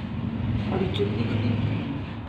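Indistinct, muffled voices over a low rumble, with no words that can be made out.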